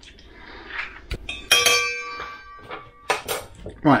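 A metal utensil strikes a stainless steel mixing bowl, which rings with several tones that fade over about a second and a half. A few more sharp clinks follow.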